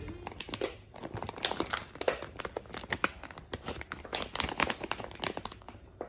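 Shiny plastic packaging bag around a pop-it fidget toy crinkling as it is handled, a run of irregular crackles.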